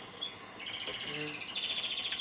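High-pitched chirping trills, two in a row, the second a little higher in pitch than the first.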